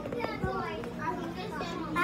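Children's voices talking and chattering, with no clear words, over a steady low hum.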